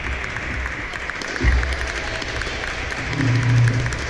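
Audience clapping: a steady patter of many hands applauding the end of a badminton rally, with a low thud about a second and a half in.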